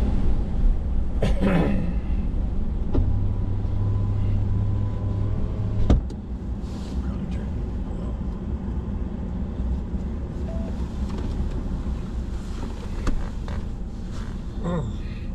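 Car engine and road noise heard from inside the cabin while driving, a steady low rumble. A deeper hum swells for a few seconds in the middle, then a sharp click about six seconds in, after which it runs a little quieter.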